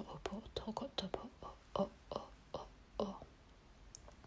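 Soft whispered light-language vocalising: quick strings of short, repetitive nonsense syllables, dying away about three seconds in.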